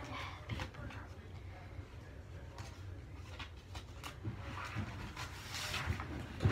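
Light rustling and a scattered run of small clicks and knocks as school papers and things are handled and rummaged through at a desk.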